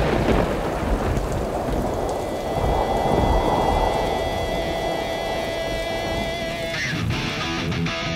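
Thunder rumbling and rain pouring, loudest at the start, with held music tones laid over it. About seven seconds in, rock guitar music takes over.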